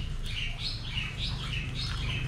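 A bird chirping a quick series of short, high, curving notes, over a steady low hum.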